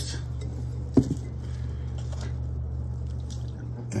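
A glass mason jar is set down with a single sharp clink about a second in, followed by a few faint knocks of a plastic tub being handled, over a steady low hum.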